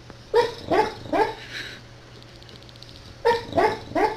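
A sleeping dog barking in its sleep: three short, quick woofs soon after the start, then three more near the end.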